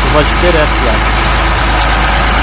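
Diesel engine of a John Deere 8320R tractor idling steadily, with a man's voice briefly near the start.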